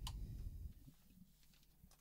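Faint background noise: a low rumble in the first half-second, a short click at the start and another near the end, then a faint steady low hum.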